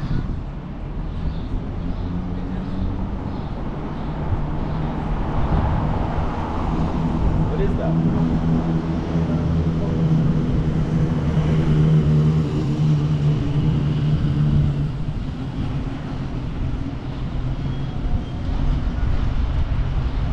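Street traffic sound: a vehicle engine hums steadily, growing louder toward the middle and then easing off.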